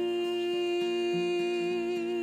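A woman's voice holds one long note over acoustic guitar accompaniment, as a cantor leads a hymn.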